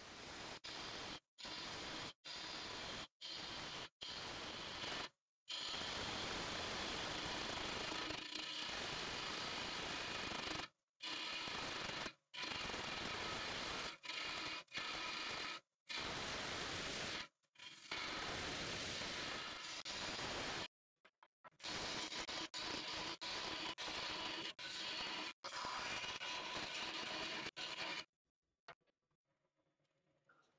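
Turning gouge cutting the wet spalted beech blank on a wood lathe: a rough, even hiss of the cut, in stretches that stop and start abruptly, going quiet for the last couple of seconds. The punky wood is chipping rather than shaving off the tool.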